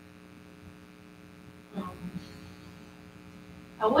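Steady low electrical hum in a quiet room, with a short murmured vocal sound about two seconds in and speech starting near the end.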